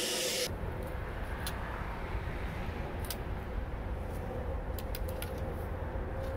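Hiss of the charcoal furnace's air blower cuts off abruptly about half a second in, as the fan is switched off. A steady low rumble and a few faint clicks follow.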